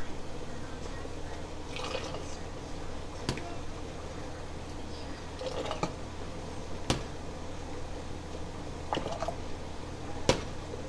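Hot tomato juice ladled through a canning funnel into a glass mason jar, with liquid pouring and dripping and a few sharp clinks of the ladle against the funnel and pot. A range hood fan hums steadily underneath.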